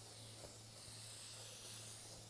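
Aerosol string lubricant (Finger Ease) sprayed onto electric guitar strings in one long steady hiss.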